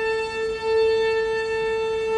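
A string quartet's bowed strings holding one long, steady note with no change in pitch, swelling slightly about half a second in.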